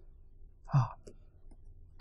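A pause in a man's lecture speech, broken by one short voiced syllable from the speaker about three-quarters of a second in.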